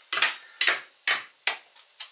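A metal spoon knocking against the side of a stainless steel pot as it stirs pork in a thick sauce: four sharp clinks about half a second apart.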